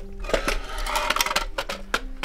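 Clicking and clattering of a hand-built prototype golf trolley, its SLS-printed plastic parts and telescopic tubes being handled, with a dense rattle about a second in. Soft background music with steady low notes plays underneath.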